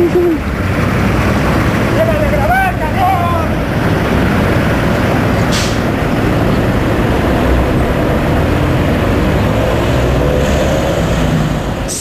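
Heavy military vehicles running past on a city street, a steady low engine rumble, with a short hiss about five and a half seconds in.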